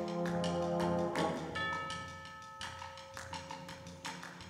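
Concert band playing: a full held chord that releases about a second in, followed by quieter sustained high notes, over a steady light percussion tapping.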